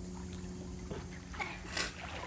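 Water sloshing from a child swimming strokes across a pool, with a brief splash near the end, over a steady low hum.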